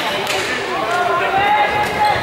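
Voices of people talking and calling out in a gym, with a few sharp knocks near the start and again near the end.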